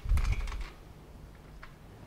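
A dull knock right at the start, then a few light scattered clicks, as objects are handled on a whiteboard's tray.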